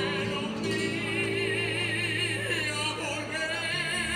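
A choir singing a habanera with instrumental accompaniment, the high voices held with a wide vibrato over steady low notes.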